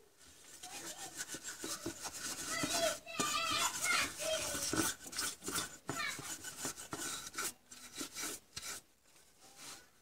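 A stiff paintbrush scrubbing dust off a monitor power supply circuit board in quick scratchy strokes. The strokes die away near the end. A high voice is heard in the background about three to four seconds in.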